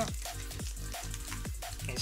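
Foil booster-pack wrapper crinkling as it is torn open by hand, with background music.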